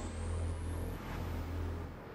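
Intro sound from a music video played back: a steady low rumble under a thin, high-pitched sweep that rises slowly and levels off near the end.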